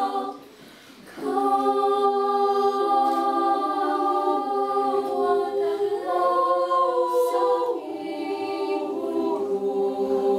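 Children's choir singing a cappella, with several voices holding long chords together. The singing breaks off briefly about half a second in and comes back in about a second in.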